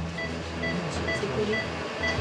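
Philips IntelliVue patient monitor sounding its pulse tone: short high beeps about twice a second, keeping time with a child's heart rate of about 125 beats a minute.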